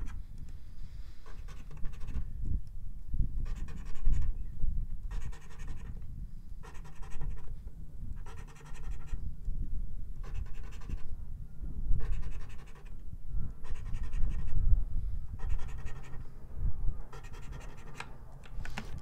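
Coin scratching the latex coating off a paper scratch-off lottery ticket, in repeated short bursts of scraping, spot after spot, over a low rumble.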